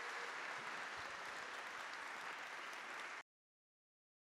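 Audience applauding steadily, cut off abruptly about three seconds in as the recording ends.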